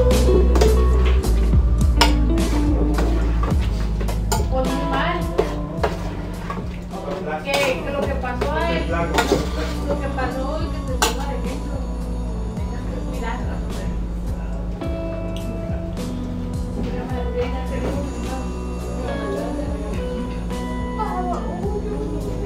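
Metal spoon clinking and scraping against a stainless steel pot as a shrimp mixture is stirred, with many short clinks throughout. Music with a voice plays in the background.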